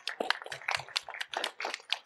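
A small group of people clapping: quick, irregular hand claps in a room.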